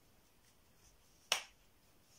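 A single sharp wooden click about a second and a half in, as the parts of a wooden easel knock together while it is handled and adjusted.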